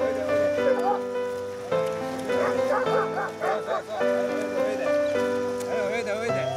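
Background music with a steady, stepwise melody, over which an Irish Setter gives a run of short, high cries whose pitch bends up and down, clustered in the middle and again near the end.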